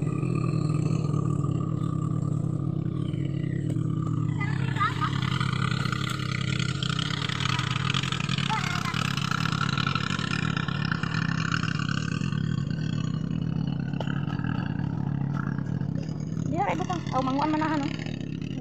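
A steady low engine drone runs throughout. Over the middle stretch it is joined by rustling and swishing of grassy weeds being trampled and pulled by hand, and a voice is heard near the end.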